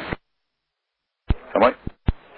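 Air traffic control radio transmissions: a voice cuts off, about a second of dead silence follows, then a click as the next transmission keys in and a brief spoken reply comes over the radio.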